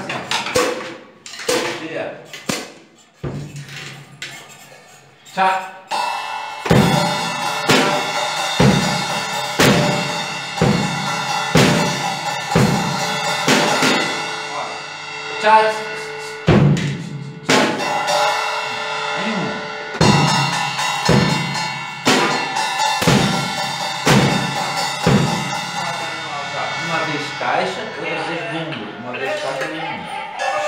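Acoustic drum kit played by a student: scattered strokes at first, then from about seven seconds in a steady beat of bass drum and snare with cymbals ringing over it, a strong stroke about once a second, with a short break in the middle.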